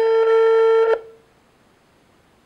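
Telephone ringback tone on an outgoing call: one steady beep of about a second at a single low pitch, the line ringing before it is answered.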